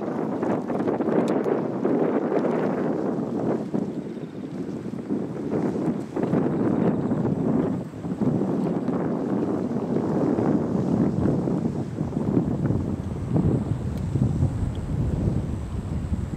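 Wind buffeting the camera microphone, a loud rumbling rush that rises and falls in gusts.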